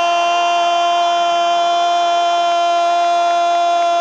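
A Brazilian football commentator's long held goal cry, "Gooool", kept on one steady high note without a break.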